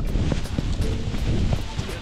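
Wind rushing over the camera microphone as a tandem paraglider touches down, under background music with a steady beat.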